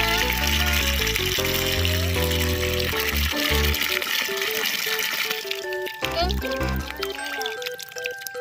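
A stream of water pouring and splashing into a plastic tub full of toy vehicles, fading out a little over halfway through. Background music with a melody and bass line plays over it.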